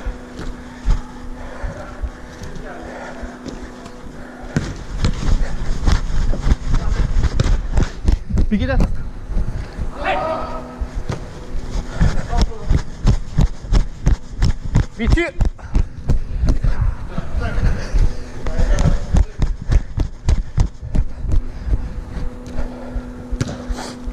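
Chest-mounted camera jolting with the wearer's running strides, a rapid run of low thuds, with short shouts from other players at intervals. A steady low hum sounds alone in the first few seconds and again near the end.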